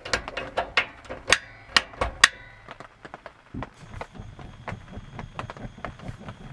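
Mr. Heater Buddy propane heater being lit: its control knob and piezo igniter click sharply over and over for about two seconds. Lighter ticking follows, with a faint steady high tone from just past halfway, as the pilot flame burns.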